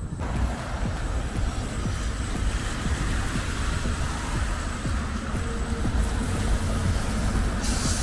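Steady city road traffic noise from a wide multi-lane avenue, with a rumble of wind on the microphone.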